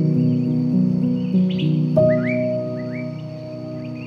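Slow piano music, with single notes in the first half and a chord struck about halfway through that rings and slowly fades. Birds chirp over it in short, rising calls that come in quick little runs.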